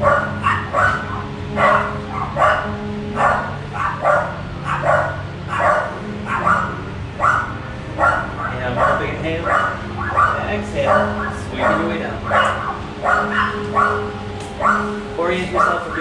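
A dog barking over and over at a steady pace, roughly three barks every two seconds, loudly and without a pause.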